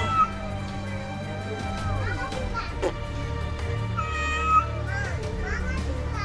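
Children's voices and music playing in the background, with what may be a cat's meow among them.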